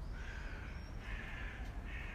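A bird giving three harsh, caw-like calls in quick succession, each about half a second long.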